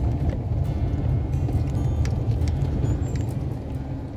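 Car driving slowly over a cobblestone street, heard from inside the cabin: a steady low rumble from tyres and engine, with a few light rattles.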